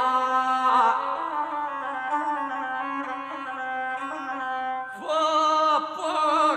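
Gusle, the single-string bowed folk fiddle, with a male guslar chanting an epic song. The voice drops out about a second in, leaving the gusle playing alone, and the singing comes back near the end.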